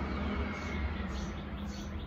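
Steady low rumble and hum of outdoor background noise, with no sudden events.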